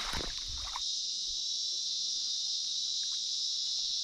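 A steady, high-pitched insect chorus that does not let up, with a short spell of water splashing in the first second from a hooked eeltail catfish thrashing at the surface.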